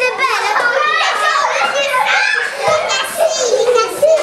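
Several young children talking and calling out over one another in high voices, a continuous overlapping chatter.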